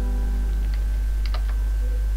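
Computer keyboard keystrokes: a few sharp clicks, one about three quarters of a second in and a quick pair about a second later, as a word is typed. A steady low hum runs beneath them and carries most of the level.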